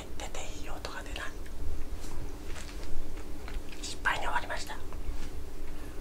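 A person whispering close to the microphone in short breathy bursts, in the first second and again around four seconds in, over a low steady hum.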